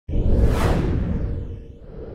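Whoosh sound effect over a deep low rumble. It starts abruptly, peaks about half a second in and fades over the next second: the opening of a TV news programme's logo ident.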